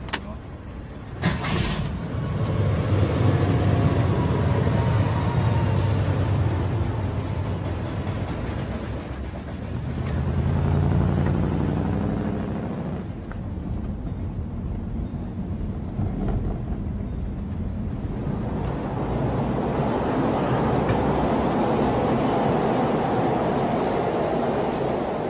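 A car door shuts about a second in, then a classic car's engine runs loud and revs, rising in pitch as the car accelerates around ten seconds in. A broader rushing noise takes over near the end.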